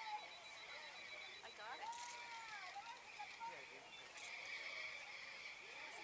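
Faint voices of a crowd outdoors, scattered calls and exclamations, over a steady high-pitched chirring in the background.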